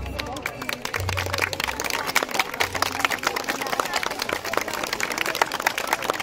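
A small audience clapping in scattered, uneven claps as a dance ends. A few last low bass notes of the music sound in the first three seconds.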